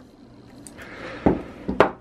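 Handling noise of Smith & Wesson revolvers on a wooden tabletop: a soft rustle, then two sharp knocks about half a second apart as one revolver is set down on the wood and the other is picked up.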